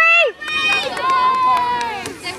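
High-pitched voices shouting from the sideline: a short shout at the start, then one drawn-out call held for about a second near the end.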